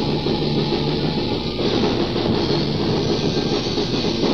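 Raw black metal rehearsal recording off cassette tape: distorted electric guitar and drums played as one dense, continuous wall of sound.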